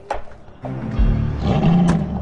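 Background music, and near the end a sports-car V8 revs up with a rising engine note: a Chevrolet Corvette Stingray's engine.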